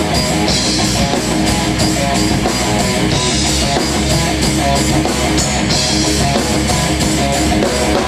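A live rock band playing a song: electric guitars and bass over a drum kit keeping a steady beat, with cymbals washing in at times.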